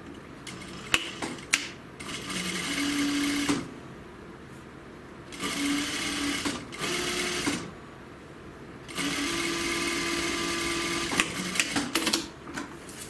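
Industrial single-needle sewing machine stitching through jacket fabric in three short runs, each lasting one to two seconds, with pauses between them while the fabric is repositioned. A few sharp clicks come before the first run and just after the last.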